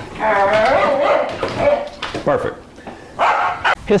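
A dog vocalizing: one drawn-out cry, about a second long, that wavers in pitch, followed by shorter cries near the end.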